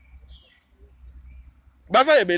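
Low, steady rumble of wind on the microphone, with a few faint, short, high animal calls in the first half.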